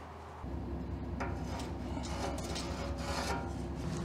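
A steady machine hum starts about half a second in and keeps going, with rubbing and scraping handling noises over it.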